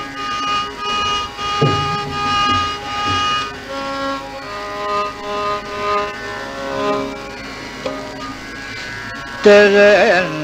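Carnatic classical concert music: held melodic notes that step from pitch to pitch over a steady drone, with a couple of mridangam strokes whose pitch falls, about two seconds in. Near the end a louder phrase enters, its pitch wavering in the ornamented gamaka style.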